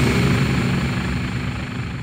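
Low droning rumble of a cinematic intro sound effect, gradually fading.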